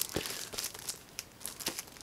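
Plastic shrink-wrap on a Blu-ray box crinkling as the box is handled: a sharp crackle at the start, then faint scattered crackles and light clicks.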